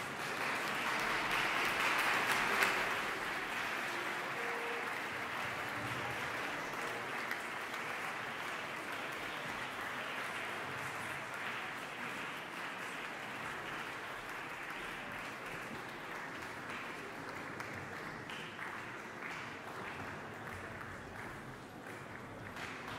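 Concert hall audience applauding. The clapping swells to its loudest a couple of seconds in, then holds steady and slowly thins.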